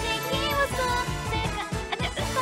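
A young woman singing a pop song into a handheld microphone over a karaoke backing track with a steady beat.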